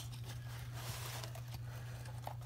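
A steady low hum with faint rustling of a small cardboard box being handled.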